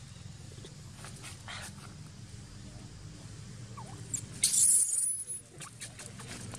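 A macaque giving a brief, loud, high-pitched squeal about four and a half seconds in, over faint scattered rustles.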